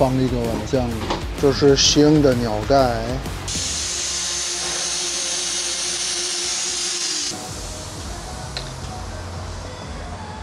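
Background music with a wavering melody for about three seconds, then a steady hiss of compressed air from a pneumatic fluid extractor drawing old brake fluid out of the master cylinder reservoir. The hiss starts and stops abruptly after about four seconds.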